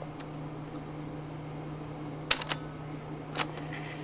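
Marantz PMD-221 portable cassette recorder giving a steady low hum. It clicks three times in quick succession a little past halfway and once more near the end, while its rewind is failing to work, which the owner puts down to the tape.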